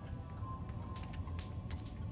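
Background music with a steady low bass line, over a few light crinkles and taps of foil-wrapped booster packs being slid around on a playmat.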